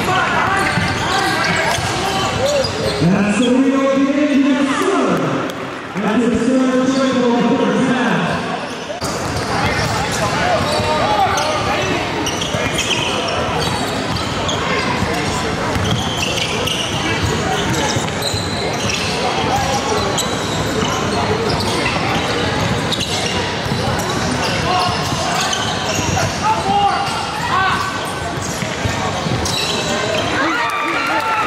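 Basketball game sound in a gym: a ball being dribbled on a hardwood court under the voices of players and spectators. Drawn-out shouted calls stand out about three to eight seconds in, and the sound changes abruptly at an edit about nine seconds in.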